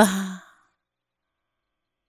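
A woman's spoken word trailing off into a breathy exhale over the first half second, then dead silence.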